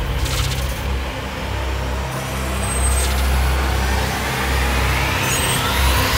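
Cinematic intro sound design for a trance radio show: a dense whooshing swell of noise over a deep, steady bass rumble, with a rising sweep that climbs ever faster in pitch through the second half.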